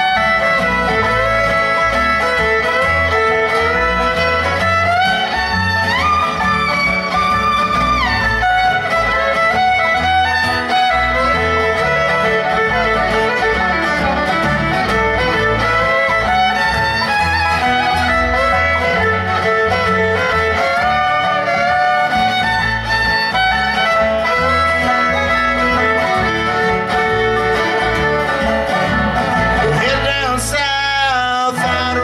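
Live bluegrass band playing an instrumental break. A fiddle carries the melody with sliding notes over banjo, acoustic guitar and bass.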